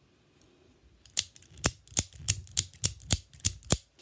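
A mini out-the-front (OTF) automatic keychain knife firing its blade out and back again and again: about nine sharp snaps, roughly three a second, starting about a second in.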